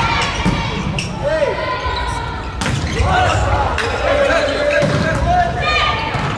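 Volleyball play on an indoor court: the ball is struck with several sharp hits spread through the moment, with players' voices calling out around them.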